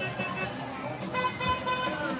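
Golf cart horn honking once, a steady tone held for just under a second, starting about a second in.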